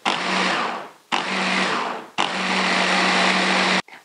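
Hand blender motor driving a chopper-bowl attachment, run in three pulses with short gaps, the last the longest, whizzing a wet chilli and garlic sauce mix.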